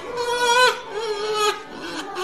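A voice from the reel's soundtrack holding about three long pitched notes, each bending in pitch at its end.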